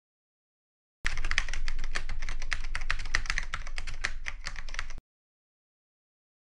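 Rapid typing on a computer keyboard: a dense run of key clicks. It starts about a second in and cuts off suddenly about four seconds later.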